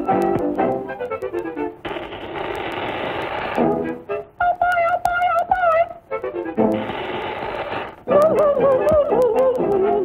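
Cartoon soundtrack music with brass playing short notes, broken twice by about two seconds of steady hissing. Between the hisses and near the end there is a wavering, warbling melody line.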